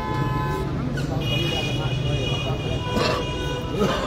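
Vehicle horns honking in a street, several held blasts over the murmur of a crowd.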